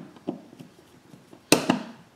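Sharp clicks and knocks of a screwdriver working on the metal strain-relief cable clamp screws of a 240-volt receptacle: two small taps near the start, then one loud sharp knock about a second and a half in.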